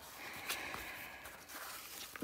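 Hands sliding over and smoothing the glossy plastic cover film of a diamond painting canvas: faint rustling, with a small tick about half a second in.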